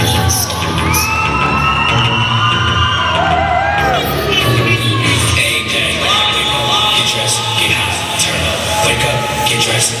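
Hip hop dance track with a steady bass beat and gliding synth lines, played over loudspeakers in a large sports hall, with the crowd cheering and children shouting over it.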